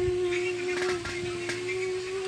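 One steady pitched note held without a break, with a few faint clicks partway through.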